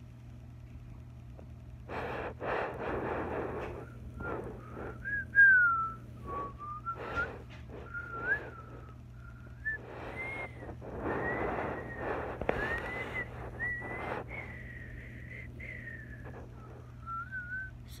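A person whistling a wandering, unsteady tune, broken by stretches of breathy rushing noise, over a low steady hum.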